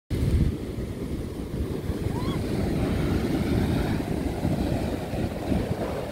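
Wind buffeting the microphone in uneven gusts over the steady wash of surf breaking on a sandy beach.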